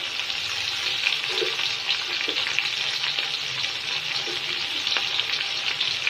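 Chicken feet frying in hot ghee with onions in a large aluminium pot: a steady sizzle with fine, continuous crackling.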